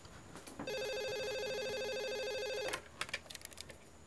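Desk telephone's electronic ringer giving one warbling ring about two seconds long, then a few clicks as the handset is lifted off its cradle.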